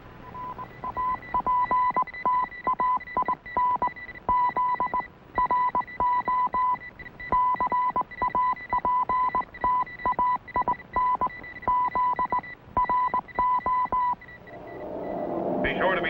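A Morse code radio signal: a steady high beep keyed on and off in irregular short and long pulses. It stops about two seconds before the end, as a low swell of sound rises.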